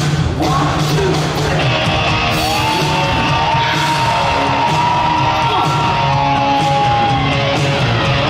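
A rock band playing live in a large hall, distorted electric guitars over drums. From about two to seven seconds in, long held high notes slide between pitches, with yelling over the music.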